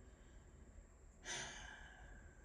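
A single short breath or sigh from the speaker, about a second and a quarter in, over faint room hum.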